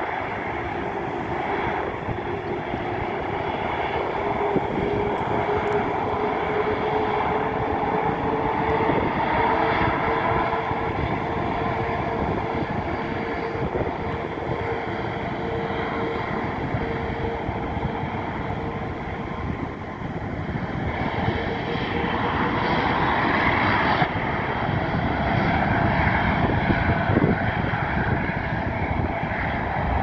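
Airbus A380-842's four Rolls-Royce Trent 900 turbofans at taxi power: a steady jet rumble with a faint whine that slowly rises in pitch, growing louder in the last third. Road traffic passes close by.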